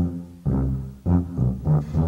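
Tuba playing a run of about six short low notes, some in quick pairs, each starting sharply and dying away: a bouncy oom-pah lead-in.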